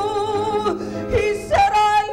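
A woman singing a show tune live into a microphone, with a steady instrumental accompaniment underneath. A held note ends just under a second in, and a new held note begins about a second and a half in.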